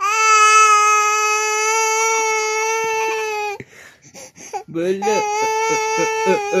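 Toddler crying: one long, steady, high wail lasting about three and a half seconds, a few catching breaths, then a second wail about five seconds in that breaks up into short sobs.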